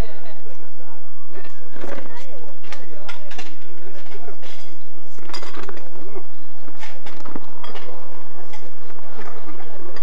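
Murmured talk from people seated at tables, with occasional light clinks of tableware.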